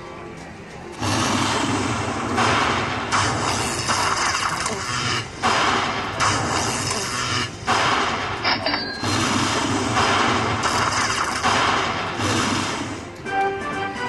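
Aristocrat Lightning Link High Stakes slot machine tallying its bonus win: from about a second in, a string of loud jingling, crashing bursts, each a second or two long with short breaks between, as each chip's credit value is counted into the win meter.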